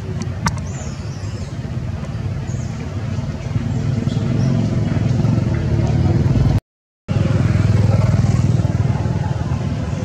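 A steady low rumble, like an engine running at a distance or wind on the microphone, with faint high chirps over it. All sound cuts out for about half a second after the middle.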